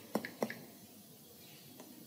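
A few light taps of a stylus tip on a tablet's glass screen, all in the first half-second, then faint room tone.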